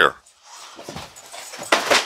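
A dog close by, breathing and moving as it grabs at a toy, with a short louder noise near the end.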